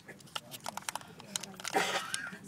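Crinkling and crackling of a thin foil lid being peeled and handled on a plastic Kinder egg capsule, in a run of small clicks with a louder crinkle near the end.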